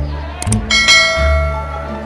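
Subscribe-button sound effect: two quick clicks about half a second in, then a bright bell chime that rings and fades over about a second, over background music with a low bass line.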